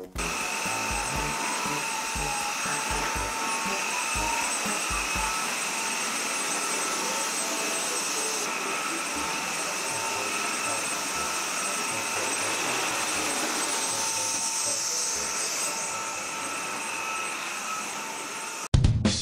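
Cordless stick vacuum cleaner running steadily: a constant high motor whine over the rush of air.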